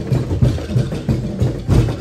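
Festival street percussion ensemble drumming a quick, steady beat of deep drum strikes with sharper wood-block-like knocks, accompanying a tribe's dance.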